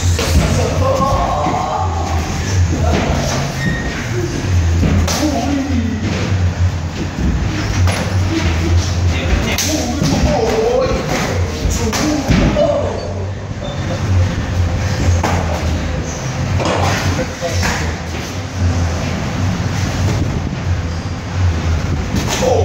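Muay Thai sparring: scattered sharp thuds and slaps of boxing gloves and shins landing on bodies, gloves and pads, over voices and music in the background.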